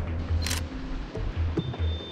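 Two DSLR camera shutter clicks about half a second apart, over background music with a low pulsing bass.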